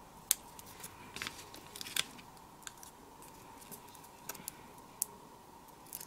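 Faint, scattered small clicks and crinkles of fingers handling paper craft pieces and peeling the backing off foam adhesive dimensionals, with a faint steady tone underneath.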